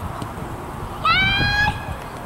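A person's high-pitched shout: one held call of well under a second about halfway through, rising in pitch at its start and then holding steady.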